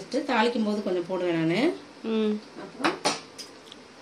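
A woman speaking, then a couple of sharp metallic clinks about three seconds in, from a spoon against an aluminium pressure cooker as ginger paste is added to the pot.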